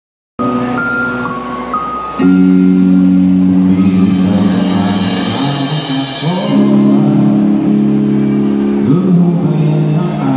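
A band playing the opening of a song: loud sustained chords over low notes that slide from one pitch to the next, starting suddenly just after the opening. The chords grow louder about two seconds in, and a bright shimmer sits above them in the middle.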